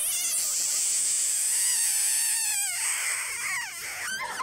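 Comic kiss sound effect: a squeaky, warbling tone with a wobbling pitch, sliding down in pitch twice in the second half.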